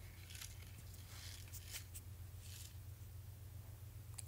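Sequins and glitter shaken inside a shaker card's foam-taped acetate window, giving a few faint, brief rattling rustles.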